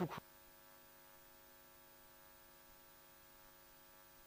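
Faint steady electrical hum, several steady tones sounding together, with nothing else happening.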